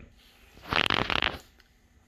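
Brass PEX male adapter being screwed by hand into a plastic inline water strainer: a brief scraping of the taped threads turning, starting about half a second in and lasting under a second.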